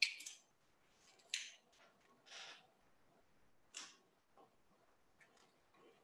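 Near silence: room tone, broken by three faint, brief noises spread across the first four seconds.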